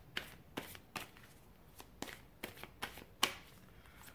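A deck of tarot cards being shuffled by hand: a run of irregular, sharp card snaps and riffles, the loudest a little past three seconds in.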